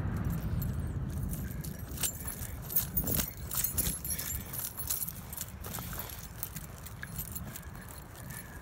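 Footsteps through dry bunchgrass and sagebrush on a slope, a run of quick light clicks, crunches and rustles with no steady rhythm. A low rumble underneath is strongest at the start and fades.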